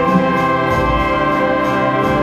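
Brass band playing a Christmas carol in a church, holding sustained chords.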